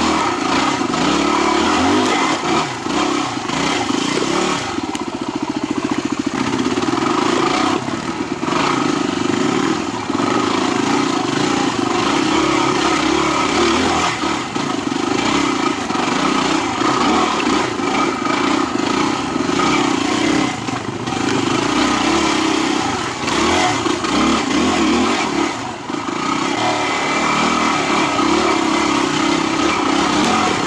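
Yamaha WR250R's 250 cc single-cylinder four-stroke engine running under constantly changing throttle on rocky single track, the revs rising and falling, with a few brief drops as the throttle is rolled off. Clatter from the bike over rocks and roots runs under the engine.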